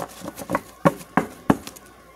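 Tarot cards being handled and knocked together in the hands, making a run of sharp taps about three a second, the loudest in the second half.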